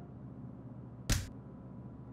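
A single short whoosh, about a second in, over a low steady hum.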